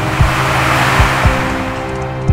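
Tense drama background music with slow, low, heartbeat-like thumps. Over it a broad rushing swell of noise builds up and fades away in the middle.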